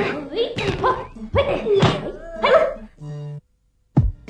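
Cartoon characters' wordless cries and exclamations: several short calls sliding up and down in pitch, then about three seconds in a short steady tone, followed by a moment of silence.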